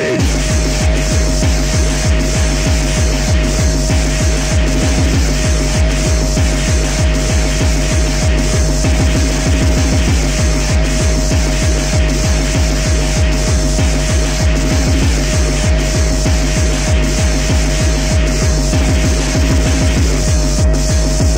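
Fast hardcore gabba techno from a 1994 DJ mix tape. A heavy kick drum comes in at the start and runs at about three beats a second under a steady high synth note.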